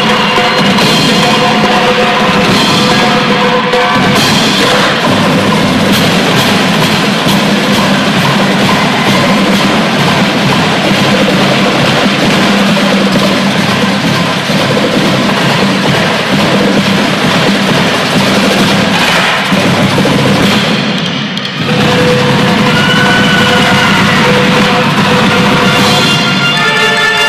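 Marching band playing, with a loud drum and percussion section driving the beat under the wind instruments. It dips briefly about three-quarters of the way through, then a sustained melody line comes back in.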